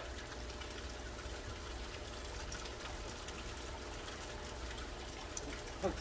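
Steady trickle and splash of water falling from a vertical aquaponics grow tower into the fish tank.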